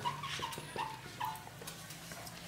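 Felt-tip marker squeaking in about four short strokes as words are written on a flip-chart board, then stopping.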